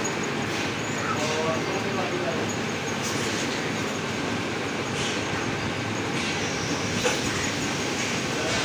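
Steady rumbling background noise of a busy shop with indistinct voices, broken by a few short knocks, the loudest about seven seconds in.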